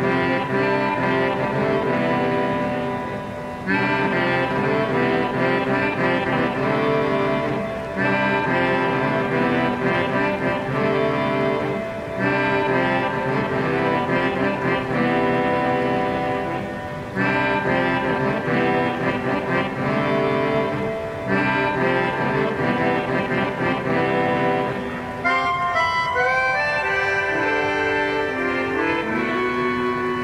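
Hammond 44 PRO keyboard harmonica (melodica) playing improvised, layered reed chords in phrases that restart about every four seconds, over a low steady drone. About 25 seconds in the texture changes to a stepping, sliding melodic line.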